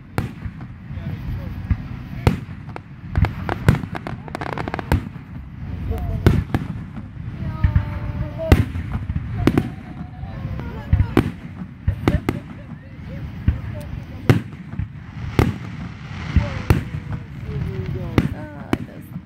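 Large aerial firework shells bursting in a show, a string of sharp bangs at irregular intervals, sometimes two or three a second, over a continuous low rumble from the display.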